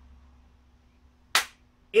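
A single sharp hand clap about a second and a half in, over a faint steady electrical hum.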